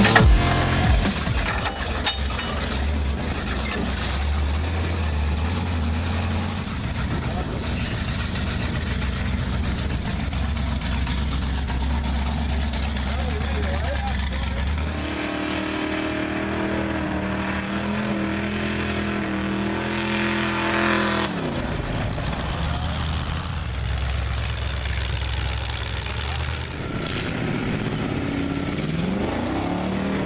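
Engines of lifted mud-bog trucks running and revving as they drive through mud, the pitch dropping sharply about 21 seconds in and climbing again near the end.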